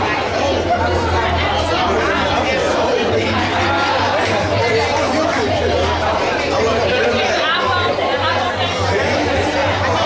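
Many voices chattering at once in a large hall, a steady babble of overlapping conversation, with a low hum that comes and goes underneath.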